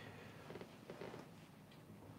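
Near silence: room tone, with a few faint, soft ticks about half a second and a second in.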